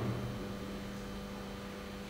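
A steady low electrical hum, mains hum, under faint background hiss.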